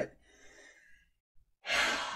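A person's loud breathy sigh close to the microphone, starting suddenly near the end and trailing off, after a faint breath.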